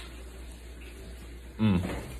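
A man's drawn-out, falling 'mmm' of enjoyment while chewing a sweet potato fry, coming about one and a half seconds in over a steady low hum of room tone.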